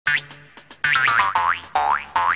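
Comic 'boing' sound effect: a string of short, springy rising pitch glides, one at the start and a quick run of them from about a second in, laid over the opening of a comedy sketch as a musical sting.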